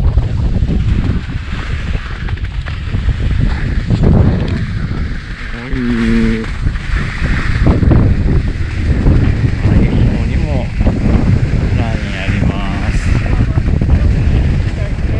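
Wind buffeting an action-camera microphone while skiing down a spring snowfield, with the hiss of skis scraping over the coarse spring snow underneath.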